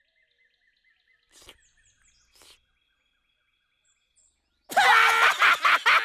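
Very quiet cartoon ambience with faint bird chirps and two soft puffs, then, near the end, two cartoon characters laughing loudly and hysterically.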